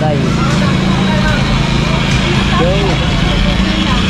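Busy market hubbub: scattered background voices and chatter over a loud, steady low machine hum.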